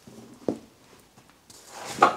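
One sharp metal click about half a second in, as a hand tool works a seized bedknife screw on a Toro DPA reel cutting unit, with a short rising hiss near the end.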